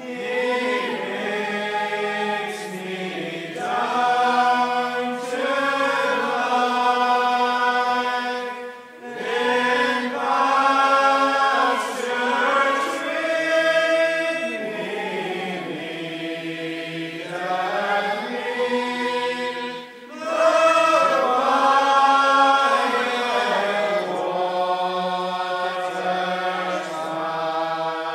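A group of voices singing slowly without accompaniment, in long held notes that slide between pitches. The singing comes in long phrases with short breaks about 9 and 20 seconds in.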